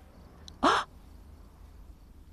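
A single short vocal sound from a person, rising in pitch, about half a second in; otherwise only a faint low hum.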